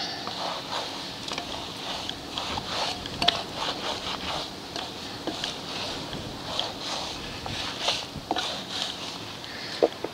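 Rat's-tail wheel brush scrubbing the soapy spokes and rim of a dirt bike's rear wheel: uneven brushing strokes with occasional light clicks as the bristles catch on spokes.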